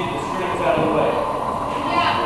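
Indistinct talk of people in the room, over a steady background hum.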